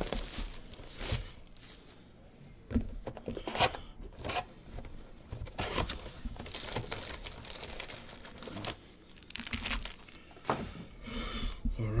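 Plastic wrapping and foil card packs crinkling and tearing in short, irregular bursts as a sealed hobby box of trading cards is opened and its packs are taken out.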